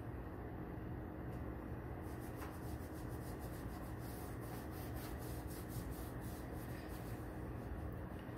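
Faint rubbing and small irregular clicks of electrical tape being pressed and smoothed onto a mold box, over steady low background noise.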